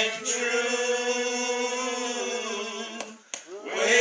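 A man singing solo, holding one long note for about three seconds, then breaking off briefly before starting the next line near the end.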